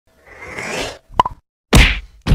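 Logo-intro sound effects: a rising whoosh, then two quick pops, then a loud sudden hit that dies away.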